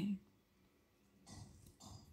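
A woman's voice trails off on the last word, then two short, soft intakes of breath about a second and a half in.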